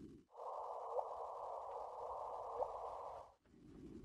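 Electronic sound-collage passage: a hiss with a steady tone beneath it switches in abruptly and cuts off just as suddenly three seconds later. Two short rising chirps sound within it, one about a second in and one past the middle.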